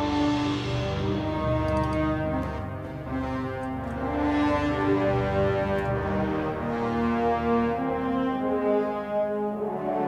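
Sampled orchestral brass from a MIDI mockup, led by French horns, playing a slow melody of held notes that swell and fade.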